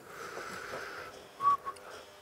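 Low room noise, then a single short, high whistle-like tone about a second and a half in.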